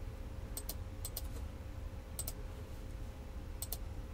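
Four short double clicks at uneven gaps, each a quick pair like a key or button pressed and released, over a steady low electrical hum.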